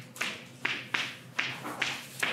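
Chalk tapping and scratching on a blackboard as lines are drawn: a run of short, sharp strokes, about two a second.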